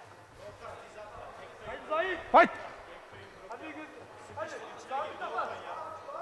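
Men's voices calling out during the fight, with one loud shout about two and a half seconds in over the hall's background noise.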